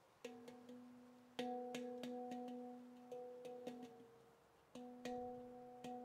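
Stainless-steel Veritas Sound Sculptures handpan tuned to F# pygmy 18, played by hand: struck notes ring on and die away slowly, with quick light taps between them. It starts just after a moment of quiet, and fresh, louder strikes come about a second in and again near the end.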